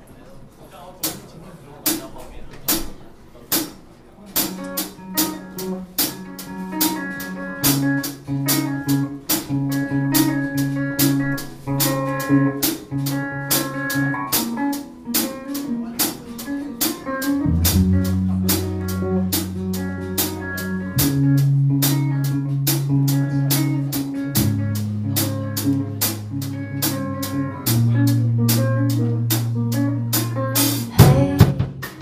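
A small rock band playing an instrumental intro live in a room: drums keep a steady beat with cymbal strokes, and electric bass and guitar chords come in a few seconds in. The bass gets much heavier a little past halfway.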